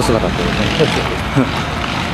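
Short, scattered bits of people's voices over a steady hiss of outdoor background noise.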